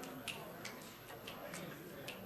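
Scattered light clicks at an uneven pace, about two or three a second, typical of computer keys and mouse buttons being pressed, over faint background voices in the room.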